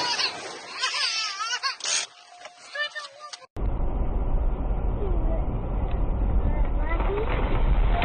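A voice with laughter-like sounds over light noise, then a sudden cut about three and a half seconds in to the steady low rumble of road and engine noise heard from inside a moving car.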